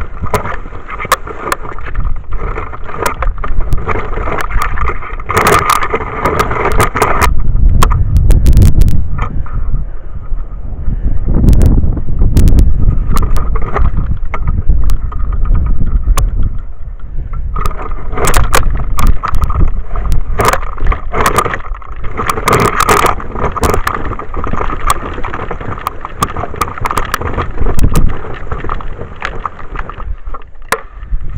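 Wedge sidewalk snow plow running along a track through snow: its wheels and blade rumble continuously and knock and rattle in sharp irregular clicks as it jolts over the ties, the rumble rising and falling in rough surges.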